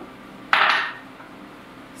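A single sharp clatter of kitchenware, dish or utensil knocking on a hard surface, about half a second in, fading quickly with a faint ring.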